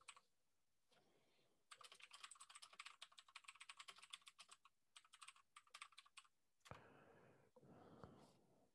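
Faint typing on a computer keyboard: two quick runs of key clicks, the first about three seconds long and the second just over a second, with a breathy noise near the end.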